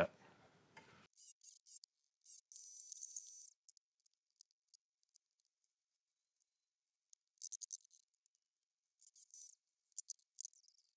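Near silence with a few faint, thin clicks and rustles, in small clusters about a second in, near the middle and near the end, plus a brief soft hiss around three seconds in.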